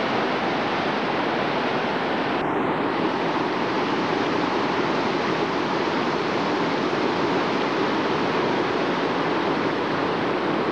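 Steady rushing roar of Class 3 whitewater rapids, even and unbroken, with a sudden brief change in the higher hiss about two and a half seconds in.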